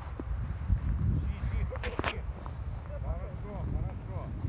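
Wind rumbling on the microphone as it moves through a dry-grass field, with rustling footsteps in the grass and a few sharp clicks about two seconds in.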